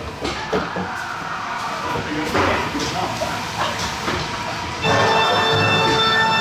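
Dark-ride scene audio: irregular clattering and knocking with faint voices. About five seconds in, louder music with held notes comes in suddenly.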